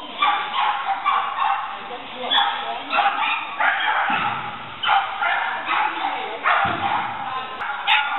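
Shetland sheepdog barking over and over while running an agility course, high-pitched barks about one or two a second.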